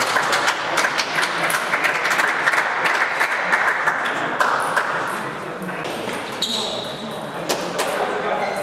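Table tennis balls clicking off tables and bats in quick, irregular clicks, busiest in the first half and sparser later, over a steady hubbub of voices echoing in a large sports hall.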